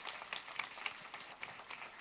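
Audience applause, faint and thinning to scattered individual claps.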